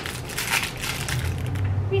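Clear plastic candy wrapper crinkling as it is handled around a peanut butter cup, a quick run of crackles through the first second and a half.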